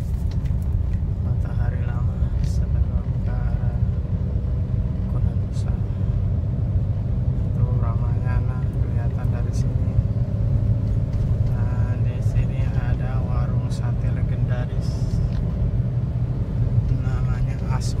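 Steady low rumble of a car's engine and tyres heard from inside the cabin while driving, with a few scattered brief clicks and faint voices in the background.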